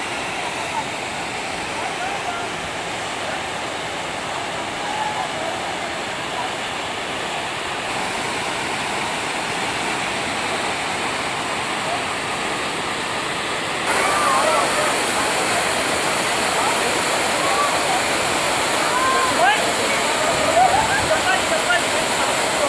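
Steady rush of water from a fast mountain stream and a tall waterfall, stepping up louder about two-thirds of the way in. People's voices call out over the water in the later part.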